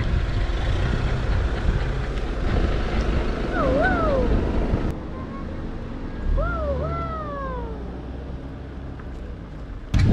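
A low steady rumble that eases off about five seconds in, with three short whining calls that rise and then fall: one near four seconds in and two close together around six and a half seconds.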